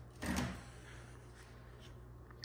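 A brief knock and rustle of handling about a quarter second in, as a TV remote is picked up, followed by faint steady room hum.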